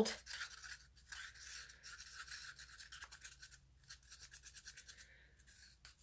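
Faint, quick rhythmic scraping of a stir stick against the inside of a cup, mixing gold-tinted resin.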